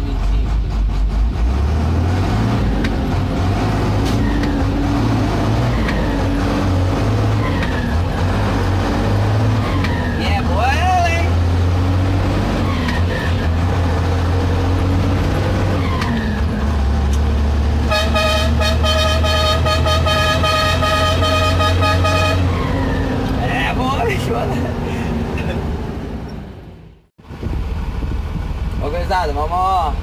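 Truck engine running loud inside the cab as it pulls away and is shifted through the gears, its low drone stepping up and down with each change. About eighteen seconds in, a horn sounds steadily for about four seconds. Near the end the sound briefly cuts out.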